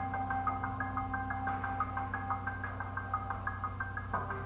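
Background music: a quick, repeating run of short high notes, about five a second, over steady held low tones.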